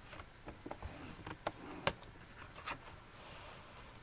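Light clicks and taps of cardstock and a plastic paper trimmer as the card is slid along the ruler and lined up for the next score line, about nine sharp ticks over the first three seconds with a faint rustle of card.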